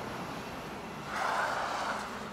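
Vehicle noise on a city street at night, a steady rumble that swells for about a second near the end as a car passes close.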